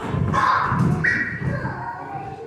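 Young children's voices, with a brief high squeal about a second in, over the movement noise of the group settling onto the floor.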